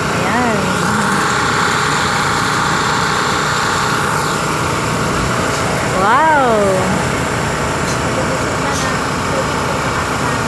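A motor on a water tanker truck running steadily, with a constant drone and several held tones; the onlookers take it to be the pump sending water to the hose. Water hisses from the hose spray onto the plants.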